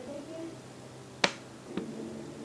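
Two short sharp clicks, a louder one a little over a second in and a fainter one about half a second later, over quiet room tone.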